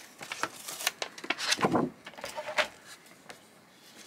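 A sticky Cricut cutting mat being peeled back off a paper envelope: paper rustling and the crackle of the adhesive letting go, with a louder rustle a little under two seconds in, then quieter handling.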